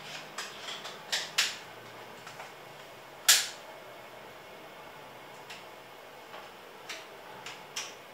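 Irregular light clicks and taps from a small handheld object being handled, with one sharper click about three seconds in.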